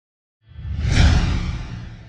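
Intro sound effect: a whoosh with a deep bass rumble that swells in about half a second in, peaks around a second in, and fades away.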